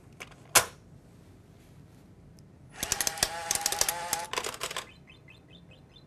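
Coin tube cassette of a Coinco Guardian 6000 coin changer clicking shut, then the changer resetting: about two seconds of whirring with rapid clicking, followed by a quick run of short faint chirps.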